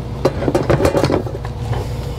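Metal pot lid and cookware being handled: a quick run of clinks and light clatter in the first half, over a steady low hum.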